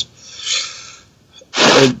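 A person draws a breath in, then lets out a single short, explosive sneeze about one and a half seconds in.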